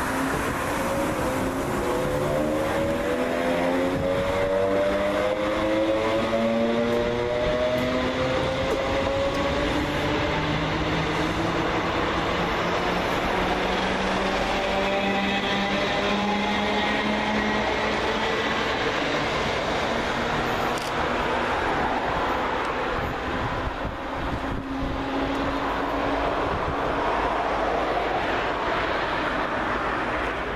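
Two coupled Class 321 electric multiple units pulling away from a station stop. Their traction motors whine and rise in pitch over the first ten seconds or so as the train gathers speed, then run on at steadier pitches while the carriages roll past.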